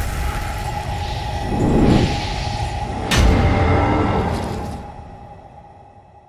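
Cinematic logo-intro sound effects: rushing whooshes over a deep rumble, a sharp hit about three seconds in, then a fade-out with a steady drone tone underneath.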